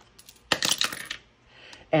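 A die rolled in a small wooden dice box: a few light clicks, then a quick clatter of hits lasting under a second as it tumbles and settles.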